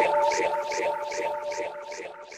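Uplifting trance track fading out: a held synth tone with an evenly repeating pulse over it, growing steadily quieter.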